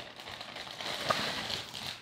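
Clear plastic bag crinkling and rustling as a rubber-cased hard drive is slid out of it by hand.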